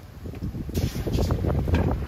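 Wind buffeting the microphone as a steady low rumble, with a short sharp hiss about three-quarters of a second in.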